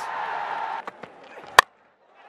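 Stadium crowd noise under a televised cricket match, fading a little under a second in; a single sharp click about a second and a half in, then dead silence at an edit cut.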